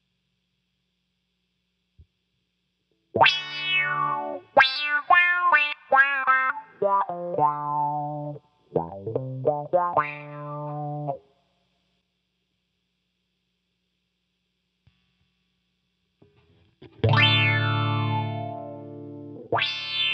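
Guitar played through a Subdecay Prometheus 3 dual filter pedal set up as a band-pass envelope filter. From about three seconds in comes a run of single notes, each with a downward-sweeping filtered tone. After a silent pause, one low note near the end sweeps down in tone as it rings.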